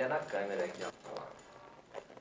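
A woman's voice, softer than the talk around it, in the first second, then quiet.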